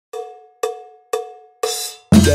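A metal bell struck four times, evenly about half a second apart, each stroke ringing briefly and fading: a count-in right before the percussion music starts.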